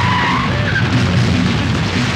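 A car skidding to a halt, its tyres squealing briefly in the first half second, followed by continuing vehicle noise.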